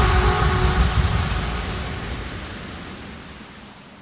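The tail of a hardstyle track: a wash of noise over a low bass rumble, with no melody left, fading steadily away.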